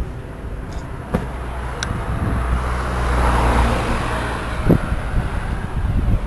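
A car passing on the street: its tyre and engine noise swells to a peak about halfway through and then fades, over a steady low rumble of traffic.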